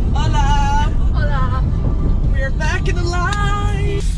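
Steady low rumble of a moving car heard from inside the cabin, with a voice over it that the transcript records no words for.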